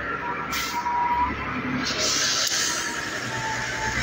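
Roadside traffic noise: a vehicle engine running with a low hum, and a hiss that comes in about halfway.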